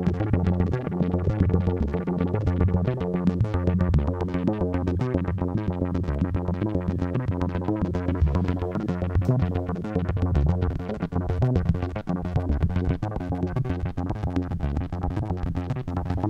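Behringer Neutron analog synthesizer holding a steady low note while its filter cutoff is stepped at random by an LFO in Random mode, so the tone flickers rapidly and irregularly between brighter and duller.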